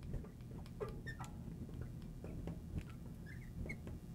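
Marker writing on a glass lightboard: faint, irregular short squeaks and light taps as the letters are drawn.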